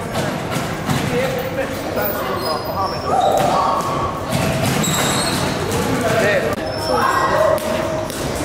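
Busy boxing gym: background voices talking over each other, with scattered thuds and knocks.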